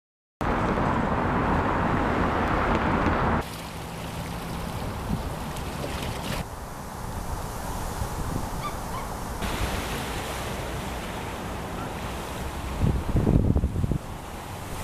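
Wind blowing on the microphone over open lake water, with waves washing among floating pancake ice. The sound starts about half a second in, is loudest for the first three seconds, then changes abruptly every few seconds, with stronger gusts near the end.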